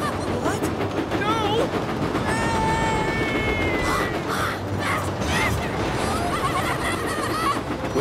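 Cartoon train sound effects: a steam tank engine running with a heavy train of trucks, a steady rumble underneath. Over it come the trucks' jeering, cackling cries, with one long held note about two seconds in.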